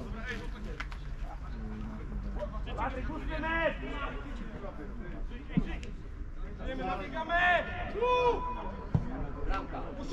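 Men shouting and calling at a distance across an open football pitch during play, in two bouts of calls, with a couple of brief low thumps in between.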